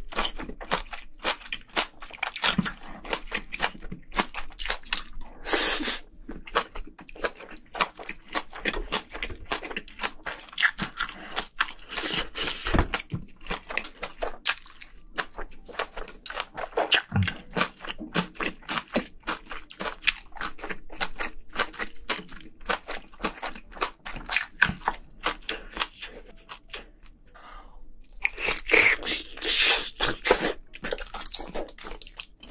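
Close-miked chewing of spicy braised seafood and rice: a dense, uneven run of crunches and wet mouth smacks. There are a few louder bites, one of them near the end.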